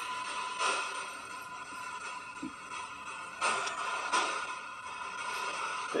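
Spirit box radio sweeping through stations: a steady static hiss with a faint constant tone, broken now and then by brief snatches of broadcast sound.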